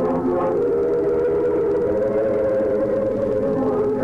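Large church choir singing a cappella Orthodox liturgical chant, holding long sustained chords, with a change of chord about half a second in.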